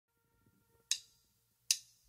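Two sharp percussive clicks, about three-quarters of a second apart, in time like the count-in of a song: the start of the music track, before its guitar comes in.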